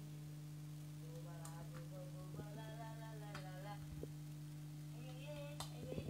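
Faint singing with music, a voice rising and falling in pitch over a steady low electrical hum. A few soft clicks sound in between.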